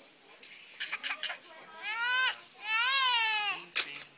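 A toddler crying while his hair is cut: two long, high wails in the second half, each rising and then falling in pitch, with a few short sharp sounds about a second in.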